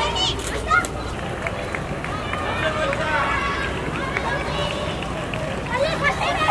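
Players' and onlookers' voices calling across a field hockey pitch over steady outdoor background noise, with a few sharp clicks of hockey sticks striking the ball in the first couple of seconds.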